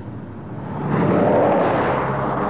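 A Mercedes-Benz sedan passing at speed: a rush of engine, tyre and wind noise that swells about a second in and then eases, over a steady low hum.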